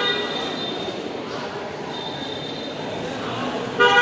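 Vehicle horns honking over a steady hubbub of voices: one honk fades out about half a second in, and another starts just before the end.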